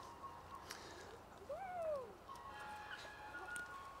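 A faint bird call in the woods: one note that rises and then falls in pitch, about halfway through, followed by a few short, higher notes near the end.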